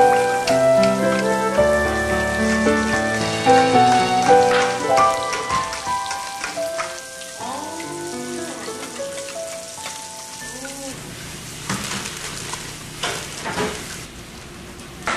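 Soft piano music that fades by about the middle. After it comes a steady sizzling hiss with a few sharp clinks of utensils, the sound of food cooking in a kitchen.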